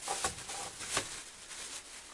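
Thin black plastic bag rustling and crinkling as it is handled and unfolded by hand, with louder crackles about a quarter second and a second in.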